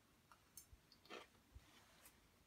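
Faint chewing of a mouthful of cheesy fried diced potatoes, with a few soft, scattered mouth sounds.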